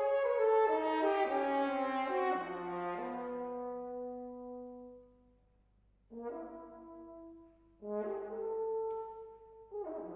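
Unaccompanied French horn playing a loud phrase of quick notes stepping downward, settling on a long held low note that fades away about five seconds in. After a short silence, two brief calls follow and a third begins near the end, each ringing on in the hall's reverberation.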